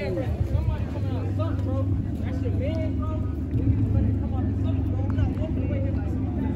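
A car engine idling with a steady low drone, under several people talking over one another indistinctly.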